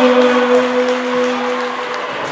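A single low musical note held steady for about two seconds, stopping suddenly at the end, over the noise of a gym crowd.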